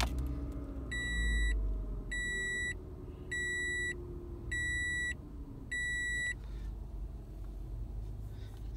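A 2014 Toyota RAV4's four-cylinder engine running just after starting, a low steady rumble that is strongest in the first two seconds. Over it a dashboard warning chime beeps five times, about once a second, then stops.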